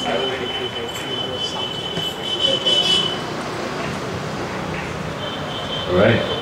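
A high steady tone rings through the PA system for about three seconds, growing louder before it stops, and comes back briefly near the end, over low murmuring voices.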